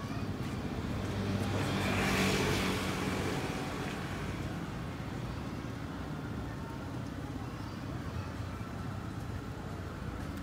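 A road vehicle passing by, building to its loudest about two seconds in and then fading, over the steady noise of street traffic.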